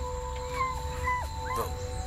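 A dog whining in a few short, high, rising and falling cries over steady droning background music.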